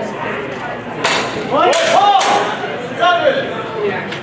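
A fast exchange with steel training longswords: two sharp strikes about half a second apart near the middle, with shouts over and just after them.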